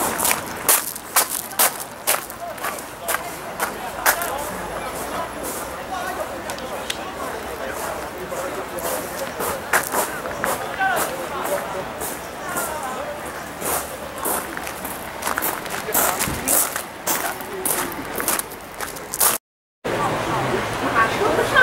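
Outdoor ambience of indistinct voices of people talking, with irregular sharp clicks and knocks throughout. The sound drops out briefly near the end.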